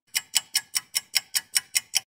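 Clock-like ticking: a quick, even run of sharp ticks, about five a second.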